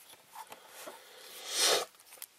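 Hands turning a Tecumseh carburetor, making faint scattered small clicks and rustles, then a short, louder rustling rush that swells and fades near the end.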